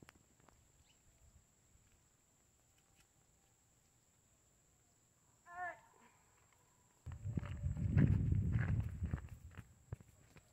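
Mostly quiet outdoors, then a brief, high-pitched vocal grunt of effort about five and a half seconds in, as a heavy clod of wet clay is heaved onto the head. A couple of seconds of low rumbling noise follows and is the loudest sound.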